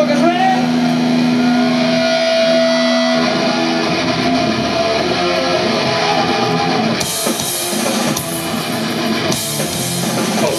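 Distorted electric guitars ringing out held chords live, with a rising tone near the start. About seven seconds in, drums and cymbals come in as the band starts the punk song.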